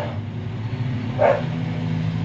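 A dog barking twice, about a second apart, over a steady low hum.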